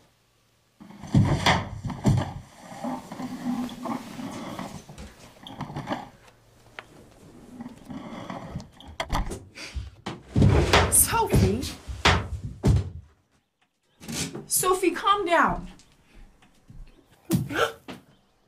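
Voices without clear words, with several thumps and knocks.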